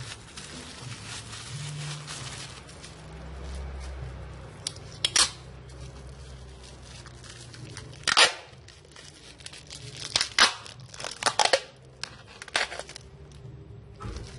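Wrapping material handled, crumpled and torn by hand while stones are being packed. A continuous rustle for the first few seconds, then about six short, sharp, loud sounds in the second half.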